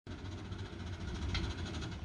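Marshall and Sons portable steam engine running under steam: a rapid, even beat over a low rumble, with a short hiss of steam a little past halfway.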